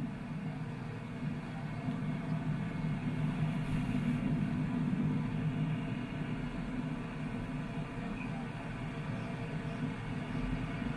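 Steady low rumble of a space shuttle's rocket engines during ascent, with the boosters still burning, played back over a room's speakers.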